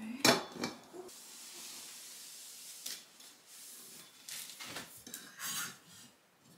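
Metal curtain rod clattering and scraping as a curtain is worked off it: sharp knocks in the first second, a steady hiss of fabric sliding along the rod, then more knocks and scrapes near the end.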